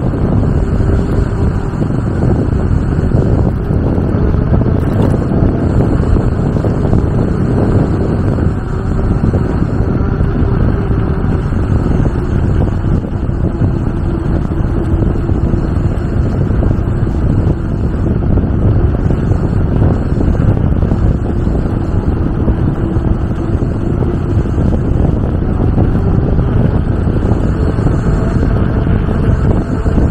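Wind buffeting the microphone of a camera mounted on a moving bicycle: a loud, steady low rumble without breaks.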